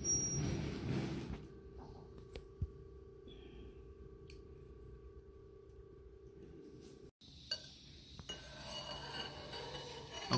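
Stainless steel pipe scraping and clinking against the machine's steel chamber as it is slid in, loudest in the first second, with a few light clicks later over a faint steady hum.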